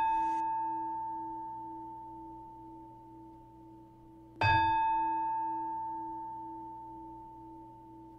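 Meditation singing bowl ringing out from a strike just before the start, then struck again about halfway through; each strike gives a clear, sustained ringing tone that slowly fades over several seconds.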